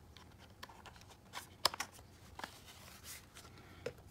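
Handling noise of a USB-C cable plug being fitted into the port on a Meta Quest 3 headset: light plastic rubbing and a few small clicks, the sharpest about a second and a half in.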